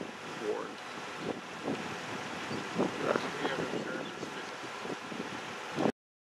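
Wind buffeting the camera microphone in open country, with faint voices in the background; the sound cuts off abruptly near the end.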